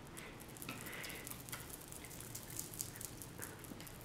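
Faint chewing of a small crunchy candy, heard as a scatter of quick little mouth clicks and crackles.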